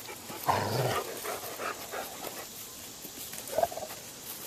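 Dogs interacting at close quarters, with short, soft dog vocal sounds: one about half a second in and a shorter one near the end.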